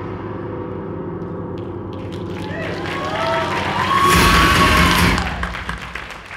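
Horror promo-video soundtrack playing over a ballroom PA: a low droning music bed with wavering tones, building to a loud swelling hit about four seconds in that drops away near the end.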